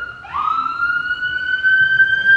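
Emergency vehicle siren: a long, clear tone that rises slowly in pitch, with a second siren tone sliding up to join it shortly after the start.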